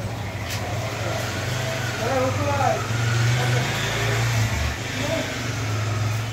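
Background voices over a steady low hum, with no clear chopping or cutting sounds.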